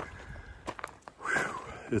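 Footsteps on a loose rocky gravel trail, a few scattered crunches, with a heavy breath out about halfway through from a hiker walking uphill in the heat.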